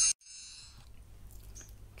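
Tail of a tinkling chime sound effect that cuts off sharply just after the start, leaving a faint fading echo of its high tones for about half a second. Then only a low steady hum of room tone.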